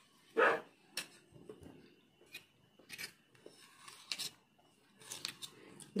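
Eating sounds: small clicks and light scrapes of a metal spoon as a spoonful of maja blanca is taken and eaten, with one louder mouth sound about half a second in.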